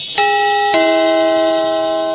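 Electronic chime sound effect over a jingling, sparkly shimmer: a higher note comes in about a quarter second in, then a lower note half a second later that rings on, like a doorbell's ding-dong.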